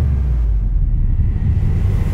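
A deep, steady low rumble with almost nothing higher above it: a sustained bass drone of trailer sound design.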